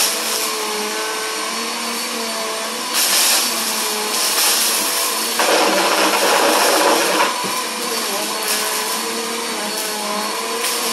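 Upright bagless vacuum cleaner running on carpet, its motor whine wavering in pitch as it is pushed back and forth. Twice, about three seconds in and again from about five and a half to seven seconds, it gets louder with a rushing rattle as it sucks up crunchy debris.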